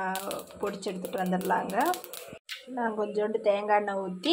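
Speech only: a person talking, with a brief break about two and a half seconds in.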